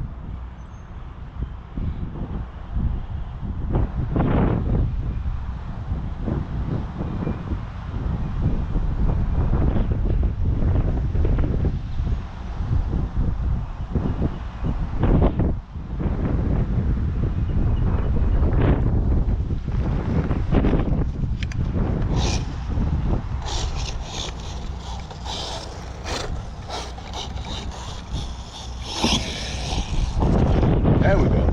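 Wind buffeting the microphone: a loud low rumble that swells and dips, with short rustling crackles in the last several seconds.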